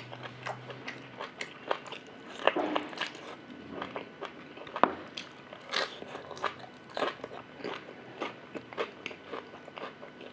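Close-up mouth sounds of eating beef ribs: irregular wet chewing, smacking and sucking as meat is pulled off the bone with the teeth. The loudest snaps come about two and a half seconds in and just before the five-second mark.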